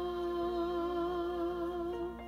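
A tenor voice holding the hymn's final sung note as one long pitch with a slight vibrato, with accompaniment underneath, released right at the end.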